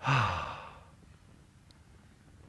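A man's audible sigh: one breathy out-breath with a faint voiced tone that falls in pitch, fading over about a second.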